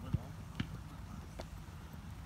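Outdoor football training pitch: low wind rumble on a phone microphone, faint distant voices of players, and three sharp thumps in the first second and a half, footballs being kicked.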